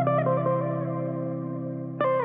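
Instrumental intro of a pop song with no vocals yet: a chord is struck at the start and rings on, slowly fading, with a few more notes added just after it.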